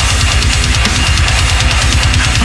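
Deathcore/metal cover music: a heavily distorted, amp-simulated electric guitar riff over programmed drums with a rapid, steady kick-drum pulse and bass.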